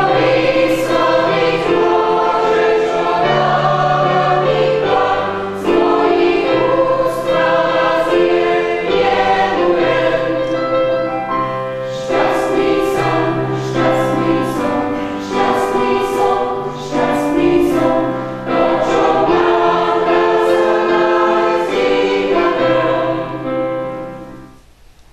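Mixed choir of women's and men's voices singing a sacred piece in several parts, held chords moving from note to note over a low bass line. The last chord fades out right at the end.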